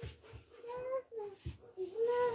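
A young girl making a few short meow-like cat sounds with her voice, pretending to be a cat while crawling on all fours.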